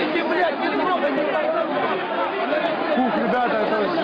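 A crowd of many voices talking and shouting over one another, with no single voice standing out.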